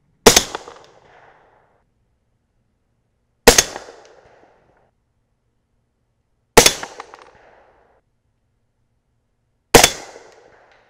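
Four shots from a suppressed AR-style rifle in 300 AAC Blackout firing subsonic rounds, evenly spaced about three seconds apart. Each is a sharp report followed by an echo that fades over about a second.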